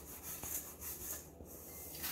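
Wooden spoon stirring a wet oat-and-fruit mixture in a stainless steel bowl: faint scraping and rubbing, with a light tap about half a second in.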